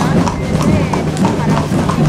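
Horses walking on a stone-paved street, their hooves clip-clopping on the stones at an uneven pace, over the chatter of a crowd.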